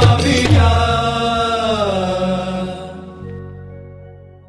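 The closing of a Gujarati devotional kirtan: the drum beats stop about half a second in, and a long held sung note slides down in pitch and fades out near the end.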